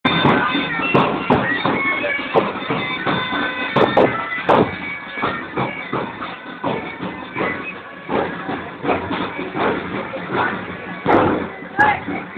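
A marching pipe band playing bagpipes, the held pipe notes clearest in the first half, amid loud crowd voices and scattered knocks.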